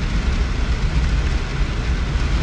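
Steady road noise inside a moving car's cabin: a low rumble of engine and tyres with an even hiss of air over it.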